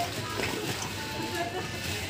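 Supermarket ambience: a steady din with faint voices and background music, and a brief click about half a second in.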